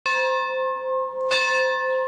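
A large bell struck twice, a little over a second apart, each strike ringing on with a steady, lingering tone.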